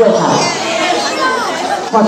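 Many students talking at once in a large hall: a loud, steady babble of overlapping voices with a few louder voices poking through.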